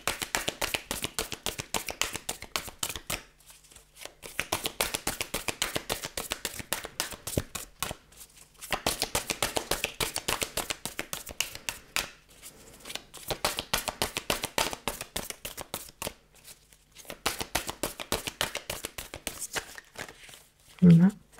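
A deck of oracle cards being shuffled by hand: runs of rapid card clicks and slaps lasting a few seconds each, broken by short pauses.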